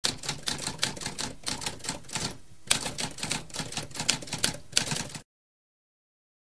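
Typewriter typing: a rapid run of key strikes with a short pause about halfway through, stopping abruptly about five seconds in.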